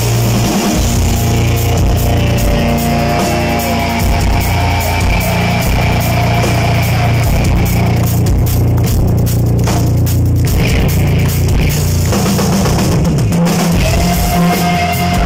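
Heavy metal band playing live: a distorted lead electric guitar solo of held and bent notes over bass guitar and drum kit. The cymbals thin out briefly about eight seconds in.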